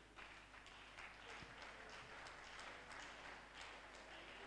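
Near silence: faint room tone of a hall with a low steady hum and a few scattered faint taps.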